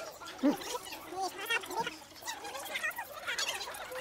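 Fast-forwarded recording: a man's voice and mouth sounds sped up into high, garbled, chipmunk-like chatter.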